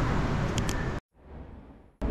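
Street traffic noise, a steady low hum of passing vehicles, for about a second, then cut off suddenly into near silence with only a faint low murmur.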